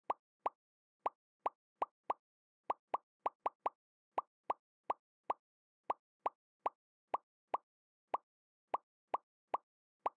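A short, identical digital pop sound effect repeats about two dozen times at uneven intervals, roughly two to three a second, with silence between. Each pop marks another picture popping up in an on-screen photo collage.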